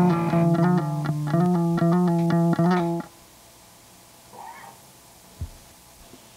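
Electric guitar and bass playing a rock song from a home 4-track cassette recording, cutting off abruptly about three seconds in. Faint room sound follows, with a brief distant voice and a short low thump near the end.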